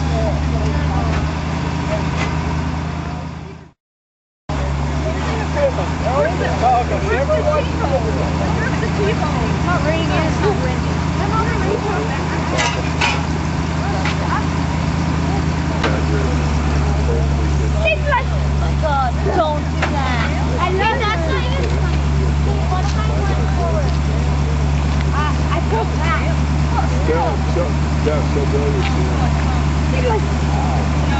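A vehicle engine running steadily at a low, even speed, its note changing slightly about halfway through, with faint voices of people talking. The sound cuts out completely for under a second about four seconds in.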